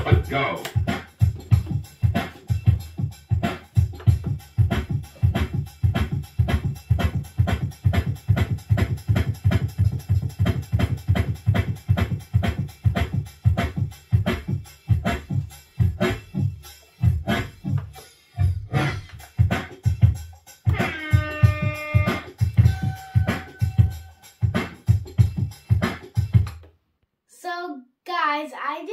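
A dance track with a steady beat of about two kicks a second, played and scratched on a Pioneer DDJ-FLX6-GT DJ controller's jog wheels. The music cuts off shortly before the end, and a child starts speaking.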